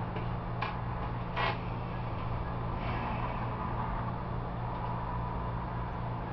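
Steady low mechanical hum with two short clicks, one about half a second in and a louder one about a second and a half in.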